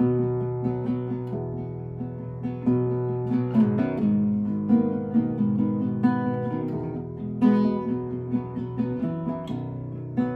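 Nylon-string classical guitar fingerpicked, a continuous pattern of plucked notes ringing over sustained low notes.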